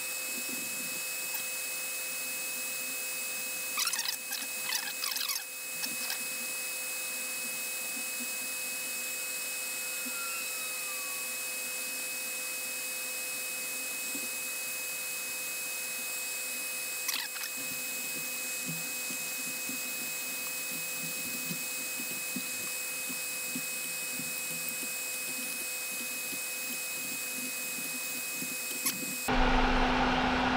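A steady hiss with a constant thin high whine, cut off suddenly near the end. A few faint brief squeaks come about four to five seconds in and again about seventeen seconds in.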